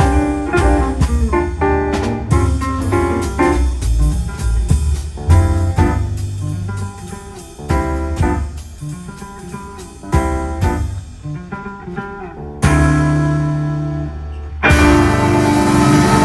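Live jazz quartet of guitar, piano, upright bass and drums playing the last phrases of a tune, with quick single-note guitar lines over a walking bass. About 12.5 s in the band lands on a held final chord that fades, and near the end the audience breaks into applause.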